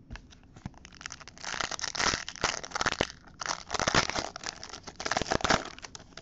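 Foil wrapper of an Upper Deck hockey card pack being torn open and crinkled by hand, in three bursts of rustling from about a second in until shortly before the end.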